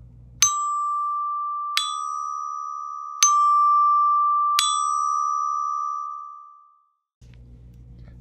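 Percussion bell kit (glockenspiel) struck with mallets: four notes alternating D and E-flat, about a second and a half apart. Each bright bell tone rings on into the next, and the last fades away over about two seconds.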